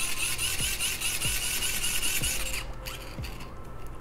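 Hand-cranked dynamo flashlight being wound: a steady geared whir of its crank and generator that stops about two and a half seconds in, followed by a few faint clicks.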